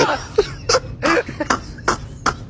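A person's voice in a series of short breathy bursts, about five in two seconds, coughing or stifled laughing.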